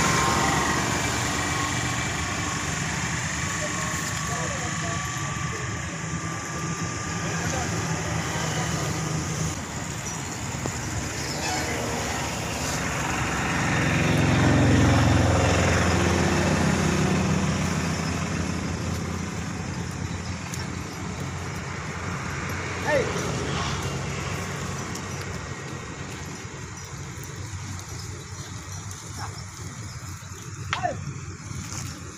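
Indistinct voices over steady outdoor noise, with a low rumble that swells and fades about halfway through.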